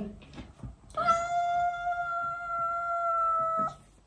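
Black-and-white longhaired cat giving one long, steady meow of nearly three seconds, starting about a second in and cutting off abruptly.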